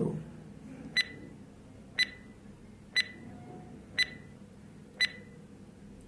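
Quiz countdown-timer sound effect: five short, sharp beeping ticks, one a second.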